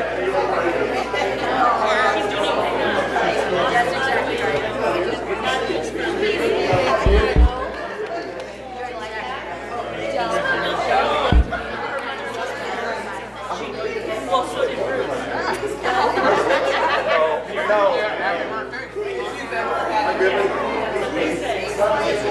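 Congregation chatting and greeting one another all at once in a large church sanctuary, many voices overlapping. A couple of low thumps come about seven seconds in and another a few seconds later.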